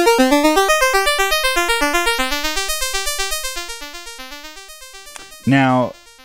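ST Modular Honey Eater analog oscillator (CEM3340 chip) playing its pulse wave as a fast sequence of short, stepped notes, about eight a second, jumping around in pitch. The tone thins and fades away over the second half as the pulse width is turned toward its extreme, where the too-narrow pulse cancels out the sound.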